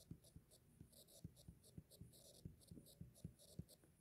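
Very faint ticks and light scratches of a stylus writing numbers on a tablet screen, about fifteen small taps spread over the few seconds.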